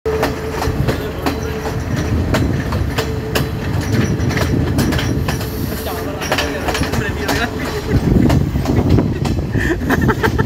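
Moving passenger train heard from an open carriage doorway: a steady rumble of wheels on rails with frequent rail-joint clicks. A steady thin tone runs along with it and stops about seven seconds in.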